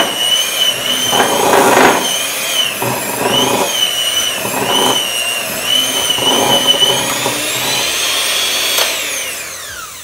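Electric mixer stirring chocolate chips into thick cookie dough: a steady motor whine that dips and recovers under the load, with rough scraping bursts from the beaters. Near the end it is switched off and the whine falls away as the motor spins down.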